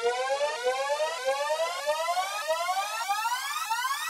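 Synthesizer riser opening a hip-hop track: a stack of electronic tones gliding steadily upward together, pulsing a little under twice a second.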